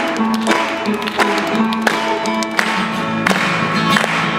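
Banjo and a Taylor acoustic guitar playing an instrumental tune together, with crisp plucked notes.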